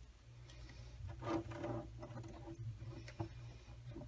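Quiet room tone with a steady low hum, a brief murmured hum from a woman's voice about a second in, and a few faint clicks of plastic netting and paper being handled on the desk.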